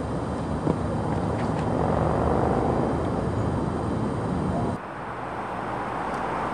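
Steady outdoor background rumble, swelling towards the middle and dropping abruptly about five seconds in.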